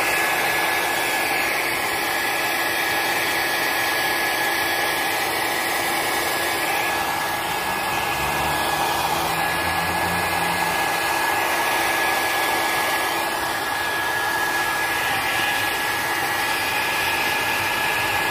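Handheld hair dryer running steadily on hot, a rush of air with a steady whine, heating a vinyl decal on an e-bike's plastic body panel to soften its adhesive.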